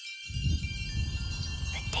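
Film-trailer music: high, tinkling chime tones, joined about a quarter second in by a sudden deep, low rumble that carries on. A voice starts speaking near the end.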